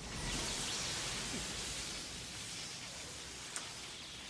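A steady rushing hiss from the anime episode's soundtrack that slowly fades, with one faint click near the end.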